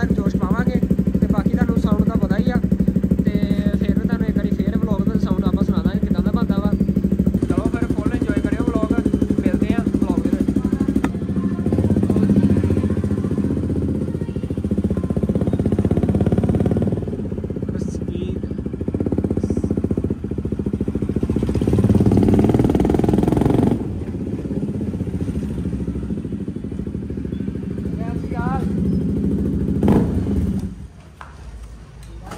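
KTM RC motorcycle engine running: first a steady idle, then from about eleven seconds in it is ridden on the road, the engine note rising and falling with the throttle, before settling lower near the end.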